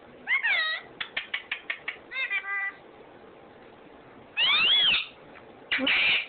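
Indian ringneck parakeet calling: a short arching squawk, then a quick run of about eight clicks, a brief held call, and a loud drawn-out arching call about four and a half seconds in, followed by another loud call at the end.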